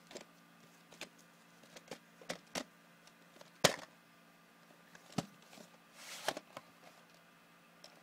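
Scattered sharp plastic clicks and knocks as VHS cassettes and their cases are handled, the loudest clack about three and a half seconds in, with a brief rustling scrape about six seconds in.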